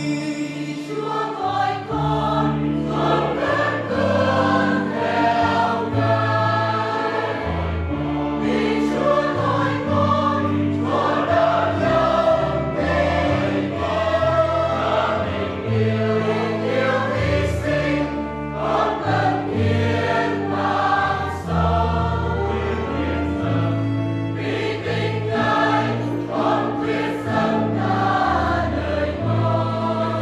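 Choir singing a hymn over held, stepwise-changing bass notes from an accompanying instrument.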